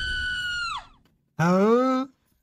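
An animated character screaming: a long high-pitched scream drops away within the first second. After a brief silence a shorter, lower yell rises in pitch near the end.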